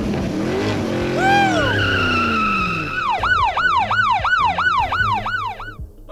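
Cartoon sound effects: a pitched sound sliding steadily downward with a brief whistling swoop, then about three seconds in a fast police-siren yelp, its pitch rising and falling about three times a second, which cuts off just before the end.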